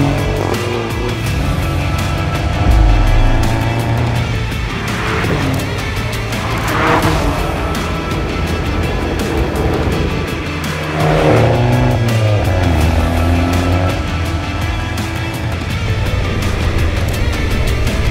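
Abarth 595 Competizione's turbocharged 1.4-litre four-cylinder engine and exhaust revving up and down several times as the car accelerates, with music playing underneath.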